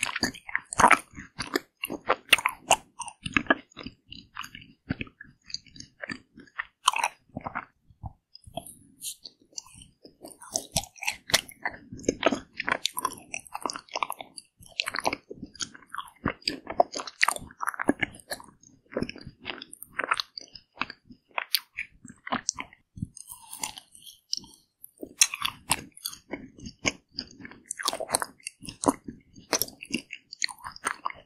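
Close-miked biting and chewing of a green tea chocolate ice cream bar, with irregular, rapid crunching of the frozen bar.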